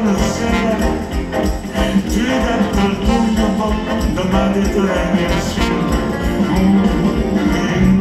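A live pop band plays an upbeat dance number with electric guitars, drums and keyboard. The music is loud and steady throughout.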